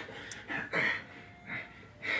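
Television audio heard across a small room during a lull in the dialogue: quiet, with two short sounds, one about halfway through and a smaller one near the end.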